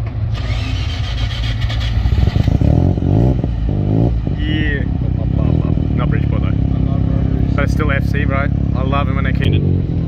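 A rotary-engined car's exhaust is running, blipped up in revs a few times about three seconds in, then settles into a steady run.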